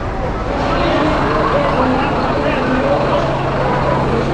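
Street noise with a truck engine running and a steady low hum that becomes clearer about halfway through. A murmur of background voices runs underneath.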